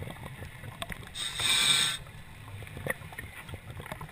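Underwater sound on a reef dive: a low rumble with scattered faint clicks, and a little over a second in a short hiss lasting under a second, a scuba regulator delivering an inhaled breath.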